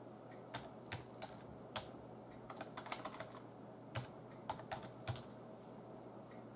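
Computer keyboard keys tapped in short, irregular bursts of a few quick clicks each, with a denser run about halfway through and another near the end.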